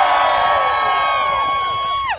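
Crowd cheering and whooping in answer to a greeting, several voices holding long shouts together that fall away right at the end.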